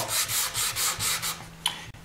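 Hand sanding with a rubber sanding block on a black-stained quilted maple guitar top: rapid back-and-forth strokes that stop about one and a half seconds in, followed by a light click. The sanding takes the black stain off the raised figure so it comes up white, leaving the dark in the grain to make the quilt stand out.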